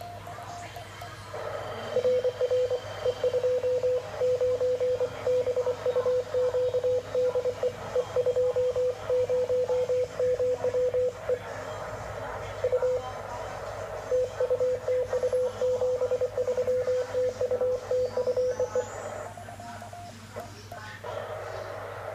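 Morse code (CW) from a Yaesu VHF transceiver on the 2-metre band: a steady single-pitch tone keyed in dots and dashes, with a pause of a couple of seconds midway. A fainter steady tone sounds before the keying starts and again after it stops, over a low hum.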